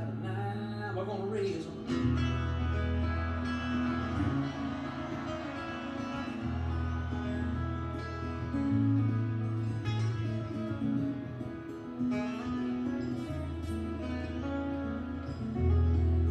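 Acoustic guitars strumming an instrumental break in a country song, over held bass notes that change every couple of seconds.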